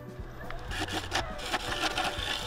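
Freshly sharpened gouge cutting the outside of a River Sheoak bowl spinning on a wood lathe: an uneven scraping with several sharp ticks over the lathe's low steady hum.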